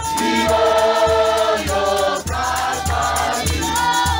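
A Zionist church congregation singing together, many voices holding long sung notes in harmony, over a steady low beat of about two a second.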